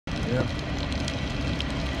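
Hard rain on a moving car with a steady rumble of road noise, faint scattered ticks of drops striking in the noise.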